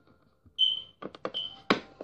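Two short high-pitched beeps about a second apart, mixed with sharp plastic clicks and clatter as small plastic toys and markers are handled on a bed. The loudest click comes near the end.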